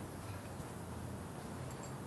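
Faint, steady room tone of a restaurant: a low hum under a soft hiss, with no distinct event.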